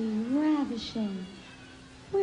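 A person's voice in long, drawn-out phrases that slide up and down in pitch, dying away in the second half.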